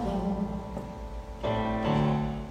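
Yamaha digital keyboard playing sustained chords that slowly fade, with a new chord struck about one and a half seconds in.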